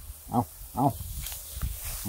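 A man's voice calling two short syllables, "ao, ao" (take it, take it), over low rumbling and knocking noise.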